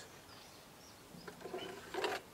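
Faint birdsong in the background, then light knocks and rustling as a fishing seat box base is picked up, with a sharper knock near the end.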